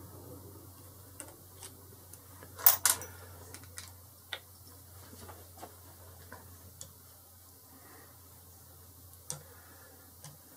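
Hex key undoing the two screws of a Boxford lathe's cross slide nut: small scattered metallic clicks and ticks, the loudest a sharp double click about three seconds in, over a faint steady low hum.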